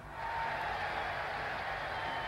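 Boxing arena crowd noise from an old archival fight film: a steady wash of cheering that comes up a moment in and holds, with a faint thin tone running through it.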